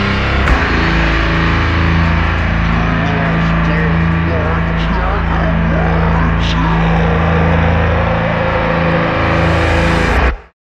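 Ending of a punk rock song: after a last drum hit about half a second in, the band holds a final distorted electric guitar chord over a sustained bass note. A wavering higher line slides up and down above it in the middle.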